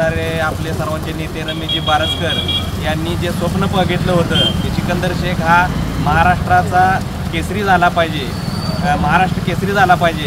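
A man speaking in Marathi, with a steady low hum underneath.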